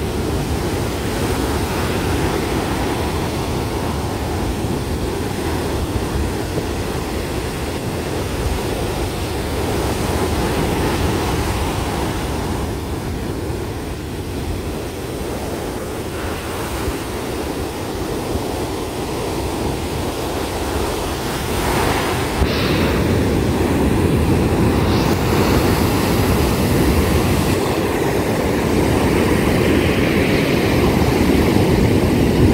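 Ocean surf breaking on a sandy beach: a steady rush of waves, growing louder about two-thirds of the way in.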